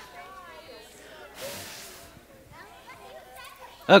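Sand pouring from a bowl into a plastic storage bin: a short hiss about a second and a half in, over faint children's chatter.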